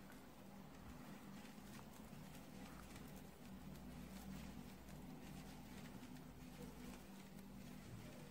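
Faint, irregular clicking of metal knitting needles as knit stitches are worked, over a low steady hum.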